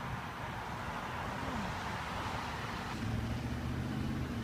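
Steady background noise of vehicles on nearby roads, with a low hum that grows a little louder about three seconds in.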